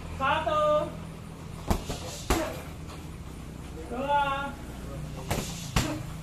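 Strikes landing on hanging heavy punching bags: four sharp hits in two pairs, the first pair about two seconds in and the second near the end. Two short shouted calls come between them over a steady low hum.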